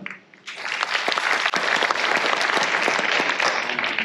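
Audience applauding: many hands clapping together, starting about half a second in and keeping up steadily.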